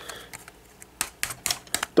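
A quick run of sharp clicks of hard plastic starting about a second in, as the clear LEGO gyrosphere shell is pressed and turned by hand; its inner frame is catching and will not move freely.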